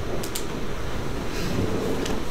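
Steady room noise in a meeting hall: a low hum and hiss with no voices, and two faint clicks about a quarter second in.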